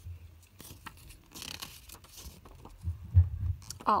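Paper rustling as the glossy pages of a CD booklet are turned and handled, with dull low thumps of handling noise, loudest about three seconds in.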